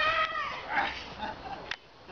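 Children's high-pitched excited squeals and cries, loudest in the first half second and then tailing off, with a sharp click shortly before the end.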